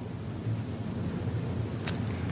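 Pause in talk: steady low rumble and hiss of the council chamber's open microphones and room, with a faint click near the end.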